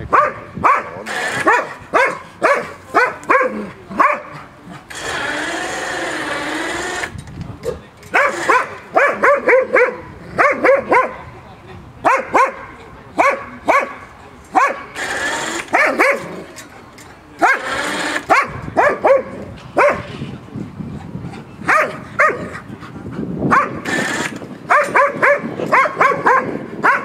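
East Siberian Laika barking hard and repeatedly at game held in a cage, in quick runs of sharp barks with short breaks between them. About five seconds in there is one longer, wavering drawn-out sound lasting about two seconds.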